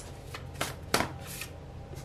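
A tarot deck being handled, with several short, crisp card snaps and slides as a card is drawn off the deck. The loudest snap comes about a second in.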